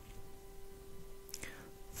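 Faint room tone with a thin, steady hum from the narration microphone. A short breath is drawn about one and a half seconds in, just before the voice resumes.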